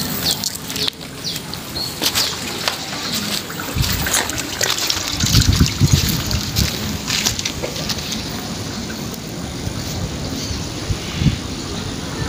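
Water trickling and sloshing in a small ditch. Scattered clicks and rubbing run through it, with low knocks about four to six seconds in.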